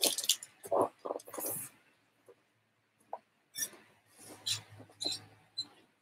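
A person moving about off-camera: rustling and shuffling in the first second and a half, then a few faint, scattered clicks and knocks.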